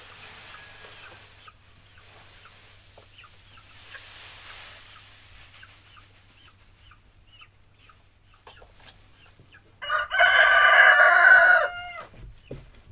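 A rooster crowing once, loud and about two seconds long, near the end. Before it, soft rustling of rice hull bedding and a sack, with scattered quiet clucks from chickens.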